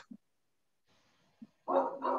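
A dog barks twice in quick succession near the end, after a near-silent stretch.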